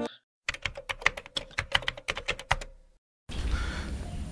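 A rapid, irregular run of sharp clicks lasting about two seconds, cut in between stretches of dead silence, like an edited-in transition effect. Near the end a faint steady room hiss takes over.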